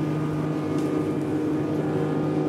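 Mercury outboard motor running steadily with the boat under way at speed: a constant, even drone with a rush of wind and water beneath it.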